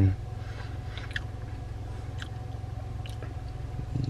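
Chewing a mouthful of hot dog, with a few faint wet mouth clicks, over the steady low hum of a car engine idling inside the cabin.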